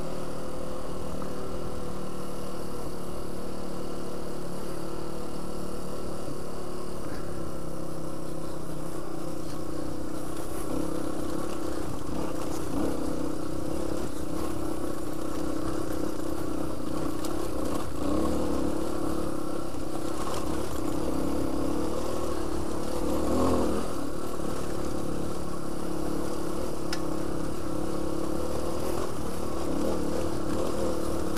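Suzuki DR350 single-cylinder four-stroke trail bike engine running under light throttle while riding. The engine note eases down over the first several seconds, then holds fairly steady, with a few knocks and clatters from the rough track.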